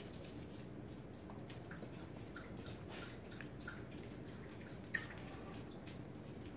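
Faint, sparse little ticks and taps from chihuahua puppies scrabbling and mouthing at a slipper on a tile floor, with one sharper click about five seconds in.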